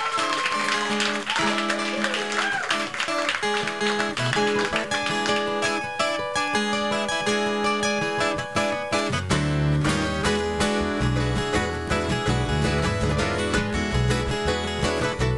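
Live acoustic band playing an instrumental intro in a contemporary Hawaiian style, led by plucked and strummed acoustic guitar. A deep bass line comes in about nine seconds in.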